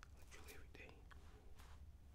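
Near silence: a man whispering faintly in the first second, over a low steady room hum.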